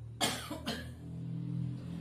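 A woman coughing twice in quick succession, the two coughs about half a second apart.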